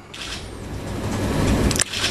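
Press-room background noise: a low rumble and hiss that swells steadily louder over the pause, with a brief click near the end.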